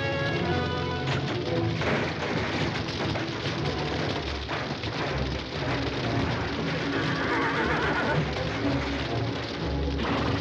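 Film score music over the crackle and low rumble of a large fire.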